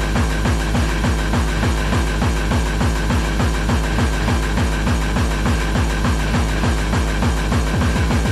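Hardcore dance music in a DJ mix: a fast, driving kick drum beats about three times a second, with a steady high tone held above it.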